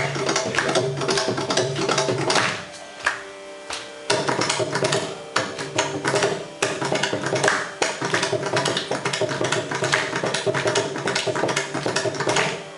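Mridangam solo in a Carnatic thani avartanam: fast, dense strokes on the tuned two-headed barrel drum, thinning to a quieter passage about three seconds in, then picking up densely again.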